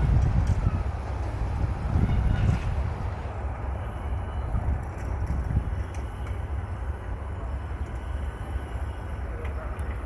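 Diesel-hauled passenger train running away, a low rumble that surges near the start and again about two seconds in, with wind buffeting the microphone.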